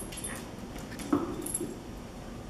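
A poodle gives a short whimper about a second in, among light clicks and rattles from the plastic treat puzzle ball he is nosing along the floor.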